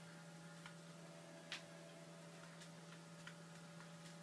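Near silence: a turntable stylus riding a vinyl record's groove after the song has ended, giving a few faint clicks about a second apart over a low steady hum.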